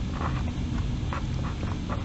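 Felt-tip marker writing on paper in short, faint scratchy strokes, over a steady low background hum.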